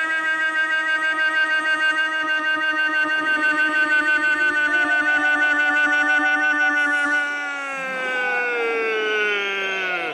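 A commentator's long held goal call, one drawn-out "gol" shouted on a single note with a steady quaver, sliding down in pitch over the last two seconds.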